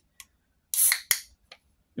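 Pull tab of a 16 oz beer can cracked open, about a second in: a sharp crack with a short burst of hiss, followed by a couple of lighter clicks from the tab.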